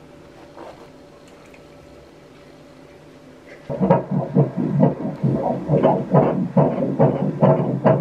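Fetal heartbeat picked up by an ultrasound Doppler during a pregnancy scan and played through the machine's speaker: a fast, even pulsing beat, a little over two beats a second. It starts about three and a half seconds in, after quiet room tone.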